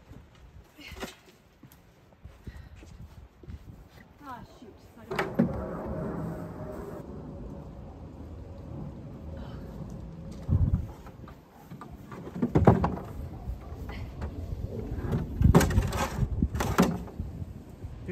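A few heavy thumps and knocks, the loudest in the second half, as a wooden table and a large stone are handled and set down. A steady low rumble runs beneath them from about five seconds in.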